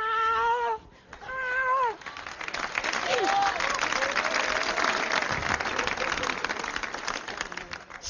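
Two short, high-pitched, meow-like vocal calls from a man's voice in the first two seconds, then audience applause that starts up and keeps going to the end.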